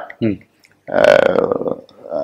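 A man's voice: a short syllable, then about a second in a drawn-out vocal sound held at a fairly steady pitch, lasting about a second.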